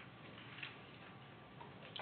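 Near silence: faint room tone with a few small, irregular ticks.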